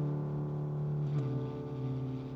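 Tenor saxophone and piano playing slow, soft jazz: a held low note that steps down to a lower one about a second in, over the sustained piano.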